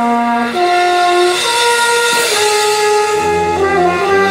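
Brass and percussion band playing slow, held chords that step from note to note; lower brass comes in about three seconds in.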